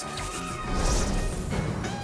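Cartoon background music with a rushing sound effect that swells up about a third of the way in and carries heavy low rumble.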